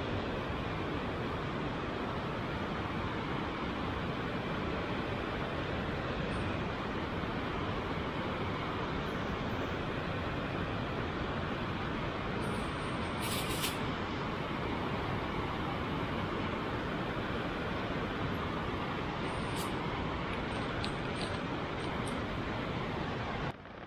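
A steady rushing noise, with a brief crisp rustle of grass and plants about thirteen seconds in as a hand picks a chanterelle mushroom, and a few faint ticks near the end.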